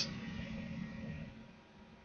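Faint hiss and room tone in a pause of speech, falling to near silence about a second and a half in.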